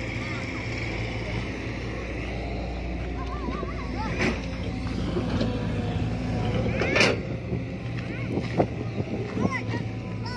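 Excavator's diesel engine running steadily, with children's voices calling out over it and a brief sharp loud sound about seven seconds in.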